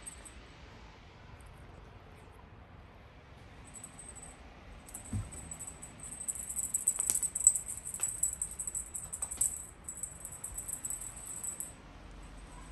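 A cat's wand toy being shaken, giving a rapid, high jingling rattle. It starts faintly about four seconds in and is louder over the second half, with a few sharp clicks. There is a soft thump about five seconds in.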